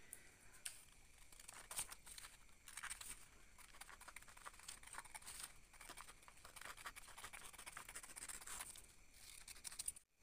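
Scissors cutting a paper sewing pattern, with faint, irregular snipping and rustling of the paper as it is cut and handled.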